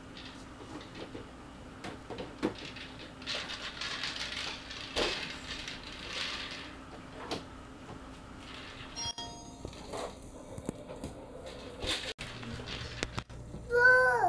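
Plastic toys knocking and rattling as a toddler rummages through the plastic bins of a toy organizer, in scattered light knocks and rustles. A brief electronic tone sounds about nine seconds in.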